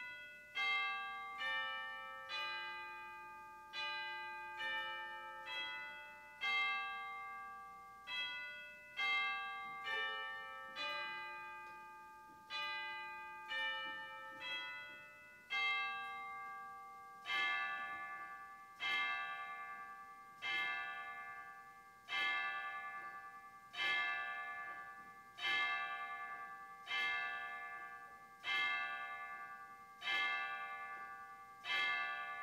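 Bells ringing: struck notes that each ring on and fade, first in a quick melodic pattern of two or three notes a second, then, after about 17 seconds, in fuller strokes about every one and a half seconds.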